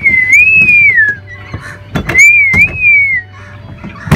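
A person whistling two wavering, rising-and-falling phrases, each a little over a second long, with a few sharp knocks in between.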